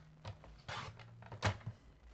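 Cardstock and designer paper being handled on a paper trimmer: a short rustle of paper sliding about a second in, then a sharp light tap and a smaller one.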